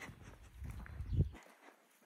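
Footsteps across cut grass, with a low rumble on the microphone that builds, peaks about a second in and then stops suddenly.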